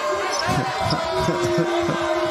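A basketball being dribbled on a hardwood court, several sharp bounces heard over a steady arena crowd din. A steady held tone comes in about halfway through.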